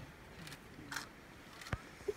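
Quiet outdoor background with faint murmuring and two short clicks, one about a second in and a sharper one near the end.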